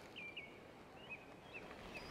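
Faint outdoor ambience with several short, high bird chirps scattered through it.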